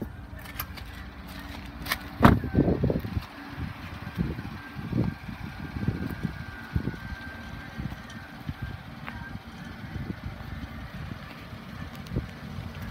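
Clicks, then a loud thump about two seconds in, as a person climbs out of a pickup truck's rear cab. Low, uneven thuds of footsteps and phone-handling noise follow, over a steady low rumble.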